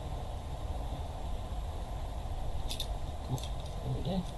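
Two short, sharp clicks, one a little before three seconds in and one about half a second later, from a multi-bit screwdriver being handled, over a steady low background hum.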